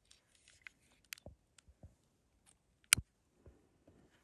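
Faint small clicks and handling noises, then one sharp click about three seconds in: a long-nosed utility lighter being sparked to light its flame.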